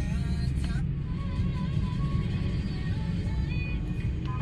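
Steady low rumble of a car heard from inside the cabin, with faint music playing under it.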